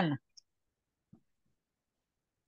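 A woman's voice finishes a word right at the start. Then near silence, with two or three faint, short clicks of keyboard keys as text is typed.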